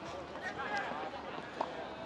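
Faint, distant voices and two soft knocks a little under a second apart.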